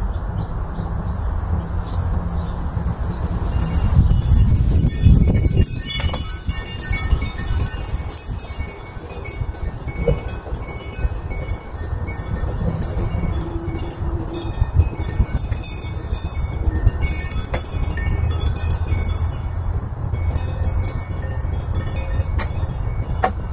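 Wind chimes ringing in irregular, scattered strikes as the wind moves them, over the steady rumble of wind buffeting the microphone. The gust is strongest about four to six seconds in.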